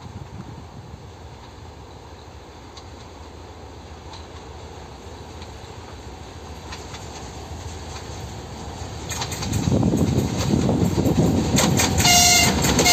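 2M62 twin-section diesel locomotive hauling a freight train on its approach, its two-stroke diesel engines making a low rumble that grows slowly louder. About nine and a half seconds in, the engine noise and the wheels on the rails get much louder as the locomotive draws close.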